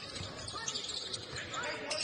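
Basketball game ambience in a gym: a ball bouncing on the hardwood court under a low crowd hum, with faint voices near the end.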